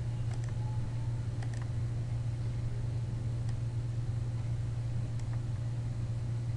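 Steady low hum, with a few faint short clicks, computer mouse clicks, scattered through it.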